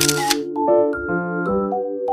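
Soft piano background music, with a brief camera-shutter click at the very start.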